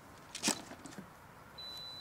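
A single sharp click as the RC flying boat's flight battery connector is pulled apart, followed about one and a half seconds in by a steady high-pitched electronic beep.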